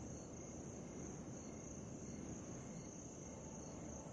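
Faint night ambience of crickets: a steady, unbroken high-pitched chirring over a low rumble.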